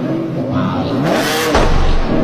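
A sports car's engine revving, its pitch rising over the first second, followed by a short hiss-like burst. Heavy bass from a music track comes in about a second and a half in.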